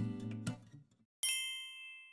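The last strums of an acoustic guitar music track, fading out within the first half-second, then a single bright ding sound effect about a second later, ringing with several high tones and decaying over about a second.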